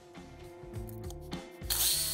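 Quiet background music, then about a second and a half in a handheld electric jigsaw starts loudly, cutting a rectangular opening in a thin wall panel.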